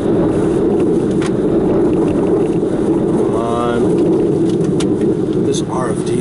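Tornado wind and rain blasting a car, heard from inside the cabin: a loud steady rush with scattered sharp ticks of debris striking the car. A brief voice cries out about halfway through.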